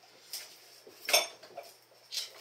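A sharp metallic clink with a short ring about a second in, as an alligator crawling under a weight rack bumps against the metal dumbbells and rack frame. A few fainter knocks come before and after it.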